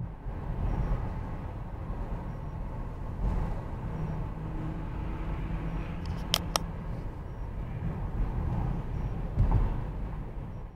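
Steady low rumble of a car driving, heard from inside the cabin through a dashcam: tyre and engine noise on a wet, slushy road. Two sharp clicks come about six seconds in, and a dull thump near the end.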